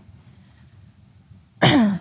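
A woman clears her throat once near the end, short and loud, after a quiet pause with only low room tone.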